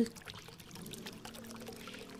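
Faint trickling-water ambience with a soft, steady background tone coming in during the second half.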